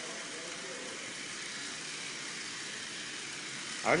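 Small DC motors and gears of a Lego robot running with a steady whir as it drives across a hard floor.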